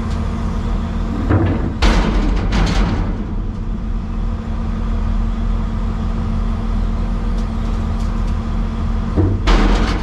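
Excavator engine running steadily, heard from inside the cab. Concrete chunks drop from the bucket into a steel truck body with a burst of loud crashes about two seconds in, and again near the end.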